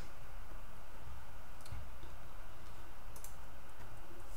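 A few faint, short computer mouse clicks over steady background hiss.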